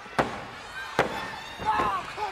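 Referee's hand slapping the wrestling ring mat twice, under a second apart, counting a pinfall, over a crowd shouting.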